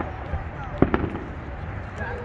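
Aerial fireworks going off: a sharp bang at the start, then two more close together about a second in.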